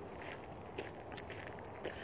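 Faint footsteps on an outdoor path, a few soft irregular crunches over a low steady hiss.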